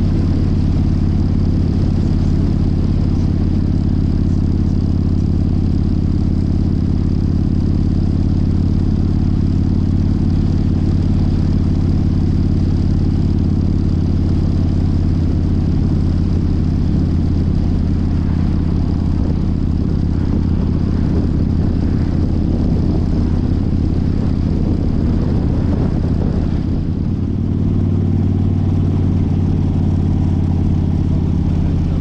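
Harley-Davidson motorcycle's V-twin engine running steadily at cruising speed, heard from the moving bike, with a brief drop in level shortly before the end.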